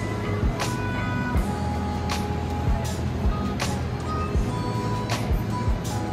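Background music with a steady beat, about one beat every three-quarters of a second, over held tones.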